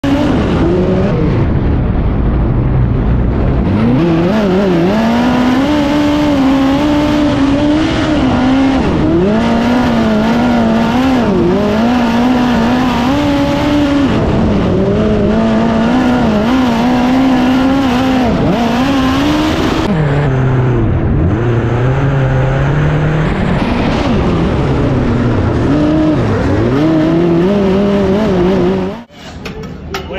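Midget race car engine heard from the onboard camera at race pace, loud and continuous. Its pitch climbs hard on the throttle and drops each time the driver lifts, with one longer low dip about two-thirds through. It cuts off abruptly shortly before the end.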